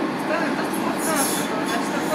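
Docklands Light Railway B2007 stock train running along the track, heard from inside at the front: steady wheel and running noise, with a high squeal of wheels on the curve from about a second in.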